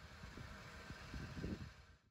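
Faint, uneven low rumble of outdoor background noise with a light hiss, cutting off abruptly at the end.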